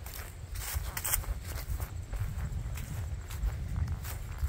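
Footsteps walking across grass scattered with fallen leaves, a few soft steps over a steady low rumble.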